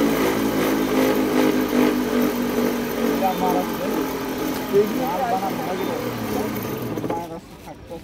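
Cotton candy machine running, a steady motor hum as its spinning head throws out sugar floss. The hum drops away suddenly about seven seconds in.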